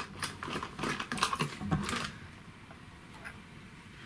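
Clicks and taps of a round plastic back cover being worked loose and lifted off a toy infinity mirror. The clicks run for about two seconds, then give way to faint handling sounds.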